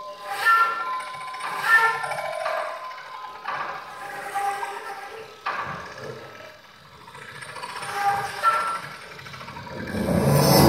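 Contemporary chamber music for flute, piano and electronic tape: a string of short, breathy flute notes and air-noise attacks with gaps between them, over sparse low sounds. The music grows quieter a little past the middle, then builds again.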